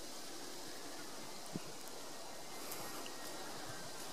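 Quiet outdoor background: a faint, steady hiss with no distinct source, and one soft tick about one and a half seconds in.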